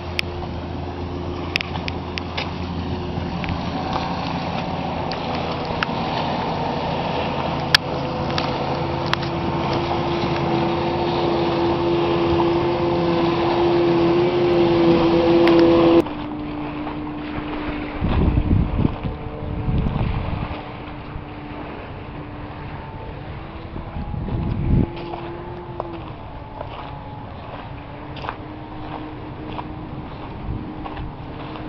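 A steady motor drone with a clear pitch, growing louder and rising slightly until it cuts off suddenly about halfway. A fainter steady drone follows, with wind buffeting the microphone twice.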